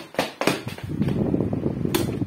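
Electric desk fan blowing straight onto the microphone as a low rumble, ended by a sharp click of its push-button switch as it is turned off. Two knocks come first.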